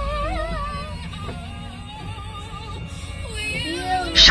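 A song with singing, with a girl singing along into a toy microphone, over the low steady rumble of a moving vehicle.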